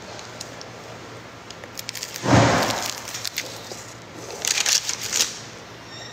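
Eating noises from tacos in a paper wrapper: one loud crunch about two seconds in, then a cluster of short crackles near the end.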